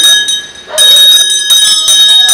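Metal ritual bell ringing loudly, struck over and over so that its high, clear tones hang on between strokes.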